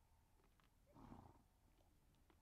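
Near silence, broken by one short, faint sound from a grazing zebra about a second in, lasting about half a second.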